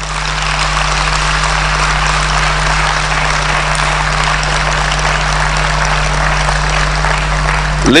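Audience applauding, a steady even clapping that holds throughout.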